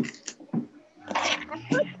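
Brief, scattered fragments of voices from several participants on a video call, short murmurs and syllables with a slightly longer utterance about a second in.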